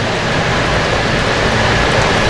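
Steady background noise, an even hiss with a low hum underneath, with no speech.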